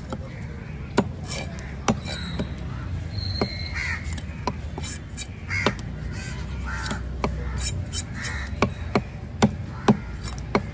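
Heavy cleaver chopping through pomfret onto a wooden chopping block: single sharp knocks at first, then a run of them about two a second near the end. Crows cawing in between.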